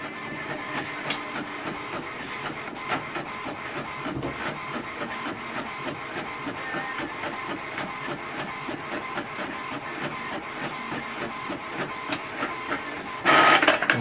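HP Envy 6030 inkjet printer printing a black-and-white copy: a steady mechanical whir from the paper feed and print carriage, with rapid regular ticking as the page advances out of the printer.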